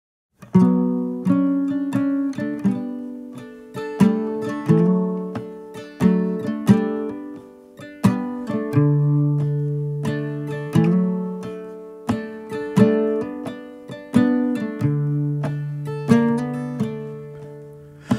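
Solo acoustic guitar intro: single plucked notes and chords, each ringing out and decaying, in a slow phrase that repeats about every two seconds.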